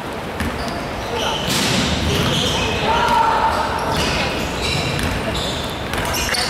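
Basketball being dribbled on a hardwood gym floor during a game, with players' voices calling out, echoing in a large sports hall.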